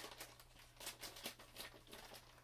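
Faint rustling and a few light clicks of items being moved and handled while searching for a pair of scissors, over a low steady hum.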